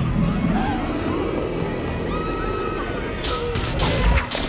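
Film soundtrack: a woman's choking gasps and voice over a low rumble and music. A burst of crackling and crashing starts near the end.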